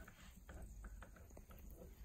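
Faint, irregular ticks of a wooden stir stick knocking against a small plastic cup while water dosed with pH reagent drops is mixed.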